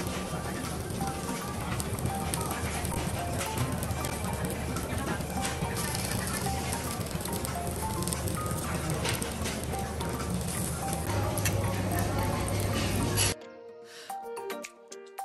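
Meat and shrimp sizzling on a tabletop restaurant griddle, a dense crackling with many small pops, under voices and faint music. The sound cuts off suddenly near the end.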